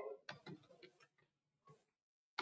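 Faint keystroke clicks of a computer keyboard as digits are typed: a quick run of about five keystrokes in the first second, then one more near the end.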